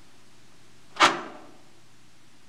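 A single sharp clack about a second in, with a short ring-out, over a low steady room hum.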